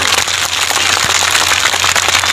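Crowd applauding: a dense, steady patter of many hands clapping.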